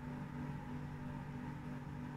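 A steady low electrical hum with a few constant tones, at a low level.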